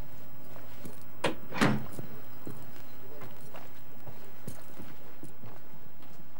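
A person's footsteps through a small cabin, with two louder knocks close together about a second and a half in and fainter knocks and scuffs after.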